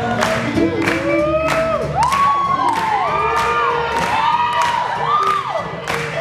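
Live swing jazz band playing with horns, upright bass and drums on a steady beat, with long sliding notes rising and falling through the middle. An audience cheers and whoops over the music.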